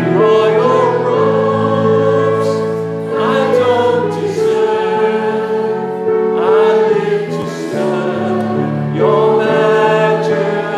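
A group of voices singing a slow worship song in long held phrases, a new line starting about every three seconds, over sustained instrumental accompaniment.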